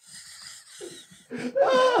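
People laughing: quiet, airy, breathless laughs at first, then a louder voiced laugh building over the last half second.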